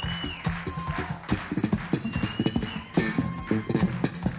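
Electric bass guitar played solo: a fast run of slapped and plucked notes with percussive clicks over low sustained tones. Twice, near the start and again about halfway through, a high whistle-like tone rises, holds and falls over the bass.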